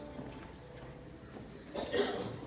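Light knocks and shuffling, with one sharper hollow knock near the end.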